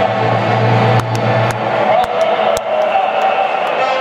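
Stadium ambience from a full crowd and the stadium sound system. A low hum stops about two seconds in, and sharp knocks come every half second or so after the first second.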